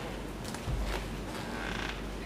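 Quiet room hum with a low thump just under a second in and a short creak late on.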